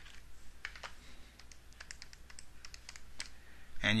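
Keys being pressed on a TI-84 Plus graphing calculator: a run of about ten light clicks spread over three seconds.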